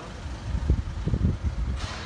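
Low rumble and a few soft knocks from a handheld phone camera being moved and carried outdoors, with no speech.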